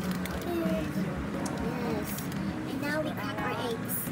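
A voice talking indistinctly in short phrases over a steady low hum, with a few faint clicks.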